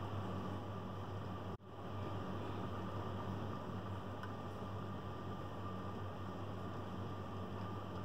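Steady low hum and hiss of background room noise, cutting out for an instant about a second and a half in.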